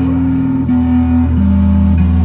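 Live rock band playing loud, sustained low guitar and bass notes that step to a new pitch about three times in two seconds.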